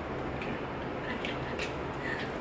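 A low steady room hum, with two light taps about a second and a half in, from an egg being tapped against the rim of a bowl to crack it one-handed.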